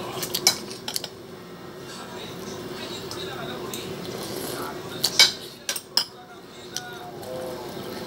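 A metal spoon clinking against a ceramic dinner plate while eating: a few sharp separate clicks, the loudest about five seconds in, over a steady low hum.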